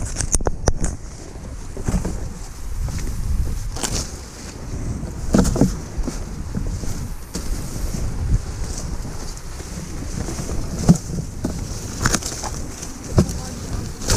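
Dry field-corn stalks and leaves rustling, with scattered sharp snaps as ears are pulled off by hand, over steady low wind noise on the microphone.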